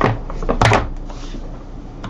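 A hard plastic foot skeleton model being picked up and handled: a knock at the start and a louder clatter about half a second in, then faint handling noise.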